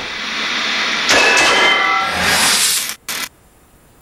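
Intro jingle sound effects: a noisy whoosh with a brief ringing chime in the middle, cutting off abruptly about three seconds in, followed by one short burst.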